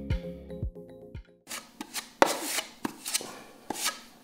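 Background music with a steady beat ends about a second and a half in. Then a steel filling knife scrapes wet plaster filler in several rough strokes, with a few sharp clicks of the blade.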